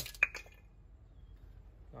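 A single sharp click with a brief ring about a quarter second in, then low steady background noise.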